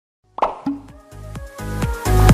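After a moment of silence, a short pop sound effect, followed by electronic dance music whose steady kick-drum beat grows louder.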